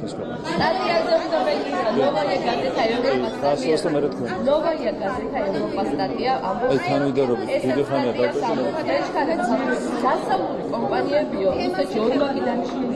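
Chatter: several voices talking over one another, away from the microphone.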